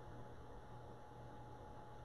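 Very quiet room tone: a faint steady electrical hum with a light hiss.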